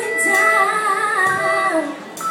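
A female vocalist sings one long, wavering note into a microphone over a live band, the pitch sliding down as it ends.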